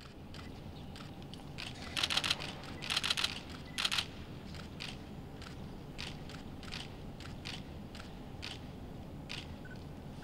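Camera shutters clicking over a low, steady room hum: quick runs of clicks about two, three and four seconds in, then scattered single clicks.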